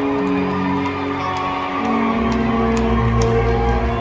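Rock band playing live in an arena: held electric guitar notes, with the bass coming in about halfway through.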